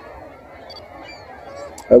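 Faint outdoor ambience with a couple of brief, faint, high bird calls in the first half.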